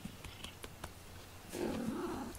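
Faint scattered clicks, then about one and a half seconds in a domestic cat gives a low, rough growl.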